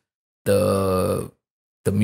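A man's voice holding a drawn-out hesitant "the" for about a second, then a short pause before he goes on speaking near the end.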